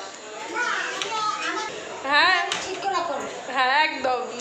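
Voices talking in a room, with overlapping, fairly high-pitched speech and a brief lull at the start.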